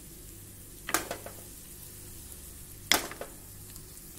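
Hot oil and ghee sizzling in a small pan with garlic, green chillies and freshly added red chilli powder for a tadka, with two sharp knocks, about a second in and about three seconds in.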